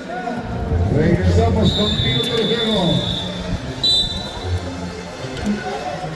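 Spectators' voices at a basketball game, with a referee's whistle blown in one long blast of about a second and a half, then a short second blast about a second later.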